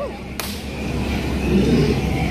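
A single sharp shot from the skipper's blank-loaded gun, about half a second in, fired to scare off the hippos, over a steady low hum.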